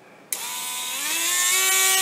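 Small brushed DC motor of a Harbor Freight Drill Master rotary tool switching on about a third of a second in and whining up in pitch for about a second before settling at a steady speed. It is run off a bench power supply turned up to 18 volts, and even so the motor is underpowered.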